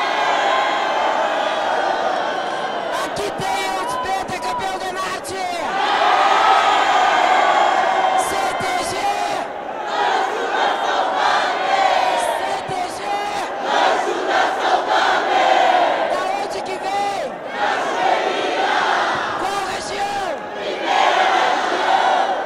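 A large crowd shouting and cheering together in celebration, many voices at once, swelling and dipping in waves, with short sharp sounds scattered through it.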